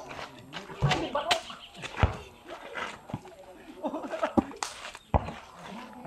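Four dull thuds spaced irregularly, among faint, scattered voices.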